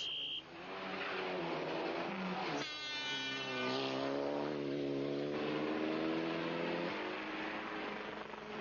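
Rally car engine revving hard as the car accelerates along a stage, its pitch climbing. After an abrupt change a little over two seconds in, a second stretch of high-rev running follows and drops away near the end. A brief high tone sounds at the very start.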